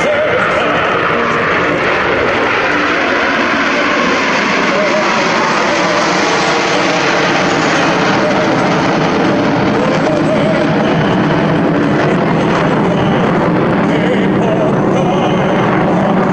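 Steady jet noise from a formation of Aermacchi MB-339 trainers, single-engine Rolls-Royce Viper turbojets, flying past, with a whine that falls in pitch over the first few seconds.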